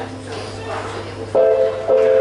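Live electronic music on keyboard synthesizers: a held chord fades down, then a new, louder chord comes in suddenly about one and a half seconds in and is struck again just before the end.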